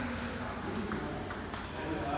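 Table tennis ball clicking sharply several times against the table and paddles, with voices murmuring in the background.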